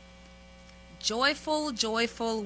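A steady electrical mains hum from the sound system for about a second. A woman's voice then begins speaking about a second in and is the loudest sound.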